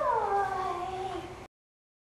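A dog's drawn-out vocal call, falling in pitch over about a second and a half, then cut off abruptly.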